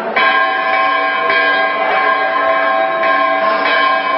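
A Hindu temple bell being struck about four times at uneven intervals, each strike ringing on into the next so the metal tone never dies away.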